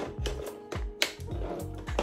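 Background music with a steady low beat, with a few sharp clicks over it.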